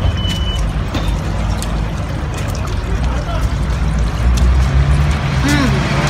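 Steady low rumble of street traffic, with a brief high beep a fraction of a second in.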